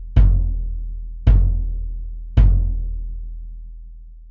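Unmuffled kick drum with a single-ply coated Evans G1 batter head, struck three times about a second apart; each hit is a deep boom with long ringing sustain and overtones that runs into the next. Miked in front of the resonant head rather than through its port, giving a fuller tone.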